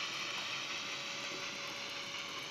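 H0-scale model hopper cars rolling along the track: a quiet, steady rolling noise of small wheels on the rails.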